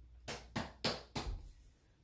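Four faint, quick clicks or taps, about three to four a second, then fading out.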